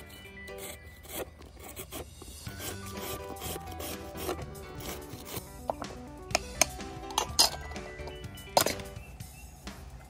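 A carrot being shredded with a hand julienne peeler against a plastic cutting board: repeated rasping scrapes, with a few sharper, louder strokes in the second half. Background music plays underneath.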